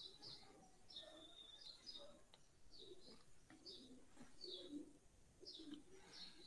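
Near silence, with faint, repeated bird chirps in the background about twice a second and a few faint clicks.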